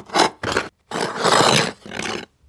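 A run of harsh scraping noises in four short bursts, the longest and loudest about a second in.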